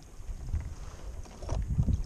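Dull low thumps and knocks against the plastic hull of a sit-on-top kayak while a mesh fish basket is handled at its side, with wind rumbling on the microphone. The loudest knocks come about half a second in and again near the end.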